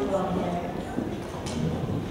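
Indistinct voices of people talking in a hall, with a few short knocks and clatters.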